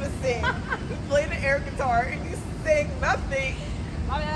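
Women's voices chatting and laughing indistinctly, high and animated, over a steady low background rumble.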